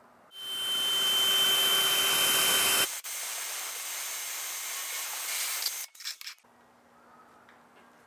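Power drill boring a hole in the planer's base for a mounting bracket: a loud steady whine for about two and a half seconds, then a quieter run for about three seconds, ending in a few clicks.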